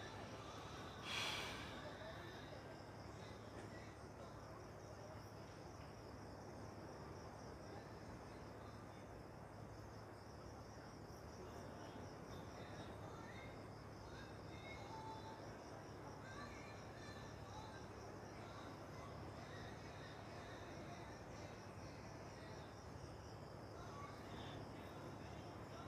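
Faint, steady, high-pitched pulsing chirp of insects in the surrounding vegetation, with a brief rush of noise about a second in.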